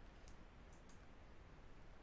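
Near silence with a few faint, short clicks in the first second, typical of a computer mouse being clicked.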